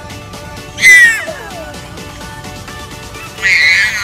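A toddler squealing with laughter: two loud, high-pitched squeals, one about a second in and one near the end, each sliding down in pitch.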